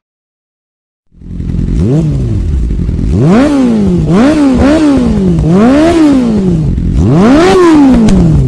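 Motorcycle engine revved hard about six times after a second of silence, each blip rising and falling in pitch.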